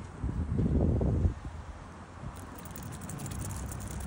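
Wind buffeting the microphone: a loud low rumble lasting about a second just after the start, then a quieter steady outdoor background.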